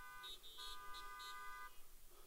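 A faint car horn held steadily for about two seconds, with a few short higher beeps over it, then stopping.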